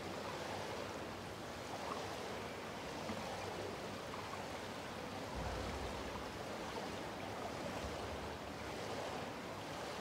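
Steady ambience of an indoor swimming pool hall: an even wash of water and room noise with no distinct events.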